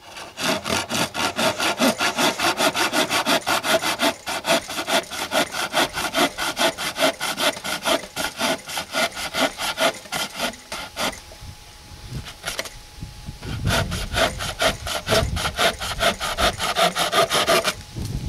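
Kershaw Taskmaster folding hand saw cutting through a dry poplar branch about an inch and a half thick, in rapid, rhythmic rasping strokes with a short pause about two-thirds of the way through. The blade sticks a bit in the kerf, so the strokes are short rather than full-length.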